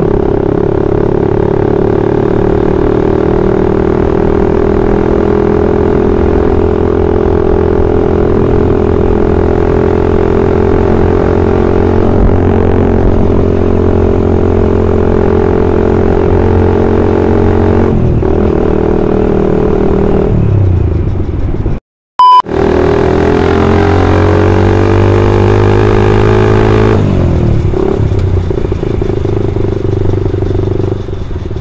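Suzuki Satria FU's single-cylinder four-stroke engine running at high revs under way, holding a steady pitch that sags slowly, then falling off about eighteen seconds in as the throttle is eased. After a brief cut-out in the sound it revs up again and falls away near the end.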